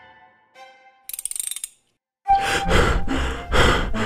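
Cartoon sound effects: a brief ratcheting rattle of quick clicks about a second in, as the wheel of characters turns. After a short silence, a rhythmic music beat starts, about three beats a second.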